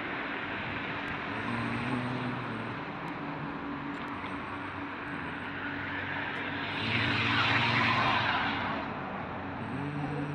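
Road traffic going by: car engines running past, with one vehicle passing close and swelling loudest about seven to eight and a half seconds in.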